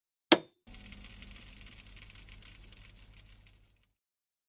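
A single sharp click, then about three seconds of faint hiss with a low hum that cuts off suddenly.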